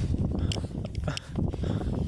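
Gusty wind rumbling on the microphone, with scattered rustles and light knocks.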